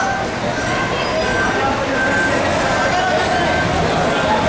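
Busy street noise around idling minibus taxis, with several people's voices talking over the traffic.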